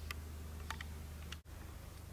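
Quiet background with a low steady hum and a few faint clicks, cut by a brief dropout a little past halfway.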